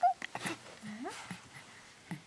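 A young baby making short, soft coos and grunts, with one rising coo about a second in.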